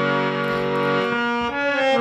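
Harmonium playing the melody on its reeds: a chord held over from before thins about a second in, then new notes come in and change more quickly near the end.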